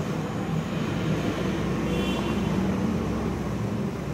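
Steady low background rumble, with a marker writing on a whiteboard over it and a brief faint squeak about two seconds in.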